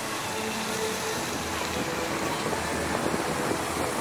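Open-air ambience of a paved city square: a steady rush of splashing fountain water jets with faint voices of passers-by.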